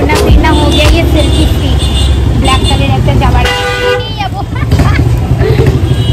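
Street traffic with a steady low engine rumble and vehicle horns tooting a couple of times around the middle, under background chatter.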